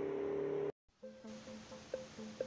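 A steady low hum cuts off abruptly less than a second in. After a brief dead silence, faint background music with soft, short notes begins.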